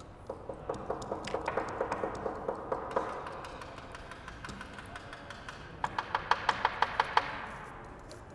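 Hair stacker being tapped rapidly on the tying bench to even up the tips of a clump of deer hair. There are two runs of quick taps, about six a second, with a pause between them.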